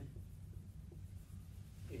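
Dry-erase marker writing on a whiteboard: a few faint, short strokes over a low steady room hum.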